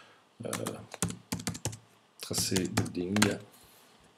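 Typing on a computer keyboard: two short runs of key clicks as a word is typed, the second starting about two seconds in.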